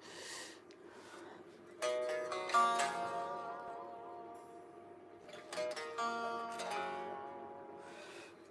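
Electric guitar picked quietly: two short phrases of single notes and chords, one about two seconds in and one about six seconds in, each ringing out and fading.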